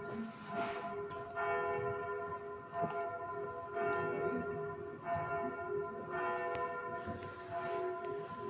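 Church bells ringing, a new stroke about once a second, with each bell's tone hanging on under the next.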